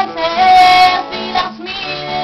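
A woman singing to her own acoustic guitar, holding one note steady for about half a second early in the phrase before the melody moves on.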